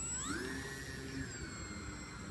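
Electric motor and propeller of a Twisted Hobbies Crack Laser foam 3D RC plane throttling up. The whine climbs in pitch shortly after the start, then holds a steady whir as the plane gets under way.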